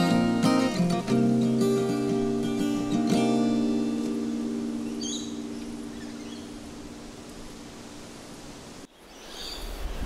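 Acoustic guitar playing the song's final chords, the last strums around the first three seconds left to ring and fade slowly. A bird chirps briefly about halfway through, and the sound cuts off sharply near the end.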